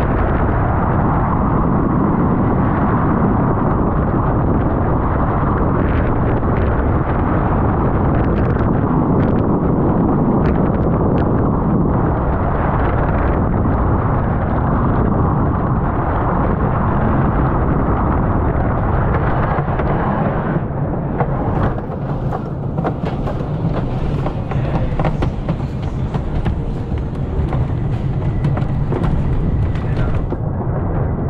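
Ravine Flyer II wooden roller coaster train running at speed, heard from the front row: a loud, steady rush of wind on the microphone over the rumble of the wheels on the wooden track. About two-thirds of the way through, the wind rush eases and the rattle and clatter of the wheels on the wooden track come through more clearly.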